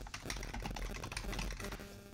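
Typing on a computer keyboard: a quick, continuous run of key clicks.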